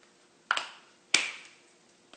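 Two sharp clicks about two-thirds of a second apart, the second the louder, each with a short fading tail.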